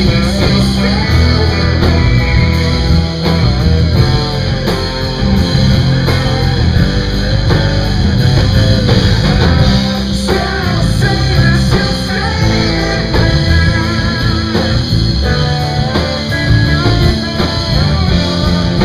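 Live rock band playing loud, with electric guitar to the fore over bass, drums and acoustic guitar; no vocals are heard.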